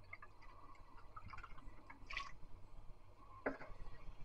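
Light beer poured from an aluminium can into a glass: a faint trickle and fizz, with scattered small ticks and pops.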